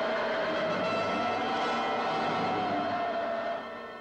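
Film trailer soundtrack: one sustained, slightly wavering tone over a dense wash of noise, easing off just before the end.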